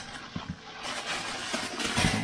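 Thin plastic bag rustling and crinkling as it is pulled open by hand, with a couple of small clicks just before the rustling.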